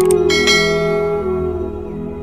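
A click, then a bright bell chime that rings out and slowly fades: the notification-bell sound effect of a subscribe animation. Underneath runs a steady drone of calm ambient music.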